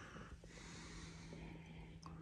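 Faint breathing in through the nose as a glass of white wine is smelled, over a faint steady hum.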